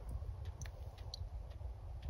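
Maple sap dripping from a spile into a plastic collection bag: faint, irregular ticks, a few each second, over a low rumble.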